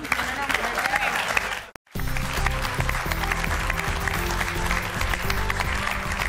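Studio audience applauding over the show's music, with a sudden dropout to silence for a split second just under two seconds in.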